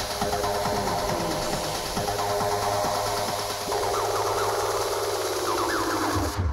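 Techno played loud over a festival sound system, in a breakdown without the kick drum: a dense, buzzing synth over a steady low drone. The synth grows brighter and rises in pitch over the last two seconds as the track builds.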